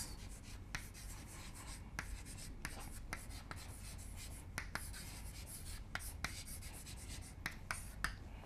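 Chalk writing on a blackboard: a quick, irregular string of quiet taps and scratches as the words are chalked out.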